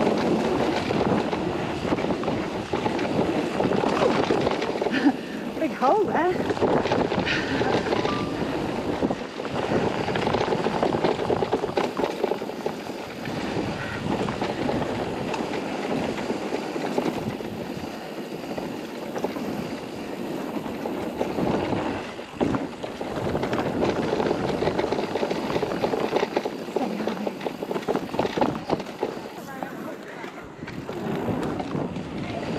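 Electric mountain bike ridden fast down a dirt trail: continuous tyre roar on packed dirt with rattling and clattering from the bike over bumps, and wind buffeting the microphone.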